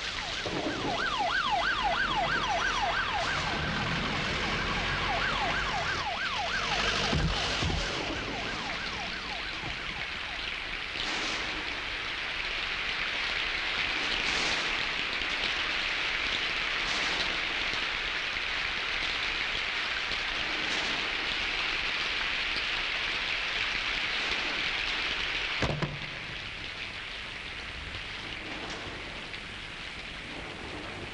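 Heavy rain pouring steadily. For the first several seconds a siren wails over it in quick, repeated rising sweeps, about four a second. Near the end there is a single thud, after which the rain is quieter.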